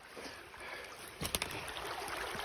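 Low, steady rush of a small stream, then a few sharp clicks and rustles of dry twigs and brush being brushed against, starting a little after a second in.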